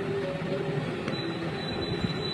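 Faint instrumental backing music of a bolero introduction, with held notes that change every fraction of a second, over a steady hiss.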